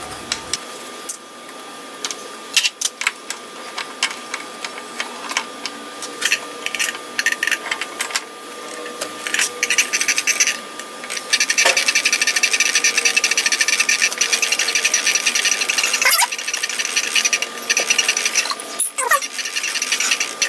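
Churchill Redman shaper's table-elevating gears turned by a hand crank: scattered metallic clicks and knocks, then a steady run of meshing gear noise for a few seconds about halfway through, then more clicking.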